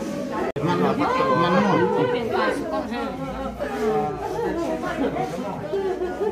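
Several people talking at once: overlapping conversation in a room, with a very brief break in the sound about half a second in.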